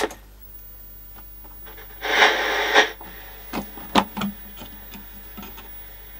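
Philips KA 920 portable CRT colour TV switched on with a click, and its high-pitched line-output whistle starts at once and holds steady. About two seconds in, a short burst of static hiss comes from its speaker as the untuned set warms up, followed by a few sharp clicks.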